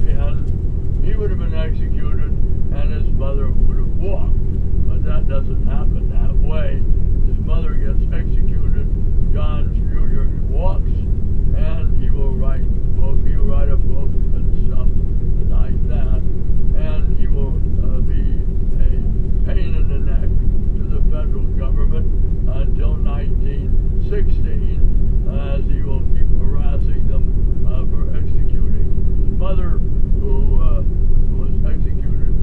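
Steady low engine and road drone of a moving vehicle, with indistinct talking over it throughout.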